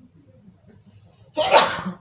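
A single loud human sneeze, one short burst near the end.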